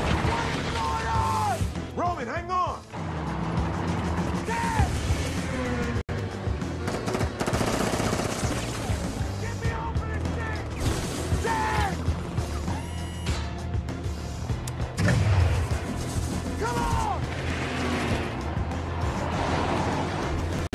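Action-movie soundtrack mix: a music score under rapid volleys of gunfire, with a few shouted lines of dialogue.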